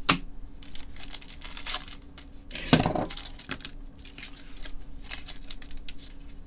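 Foil trading-card pack wrappers being handled and torn open with gloved hands: a run of quick crinkling, rustling ticks, with one heavier knock about three seconds in.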